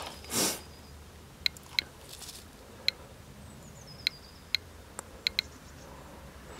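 GQ GMC-300E Geiger counter pressed against rock, beeping once for each count at irregular intervals, about eight ticks in six seconds. The count rate is a little raised but still near background radiation. A short rustle comes near the start.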